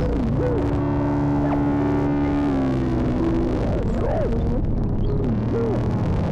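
Eurorack modular synthesizer playing an improvised ambient drone: a steady low drone under held tones, with pitches that slide and swoop up and down.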